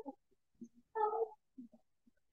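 Two short, high vocal calls with a steady pitch: one trailing off at the start and another about a second in. Faint low sounds come between them.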